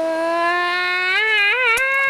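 A voice making a long, eerie "oooo" noise as a mystery sound effect. It is one held tone that creeps slowly upward, wavers in pitch near the end, then slides down and stops.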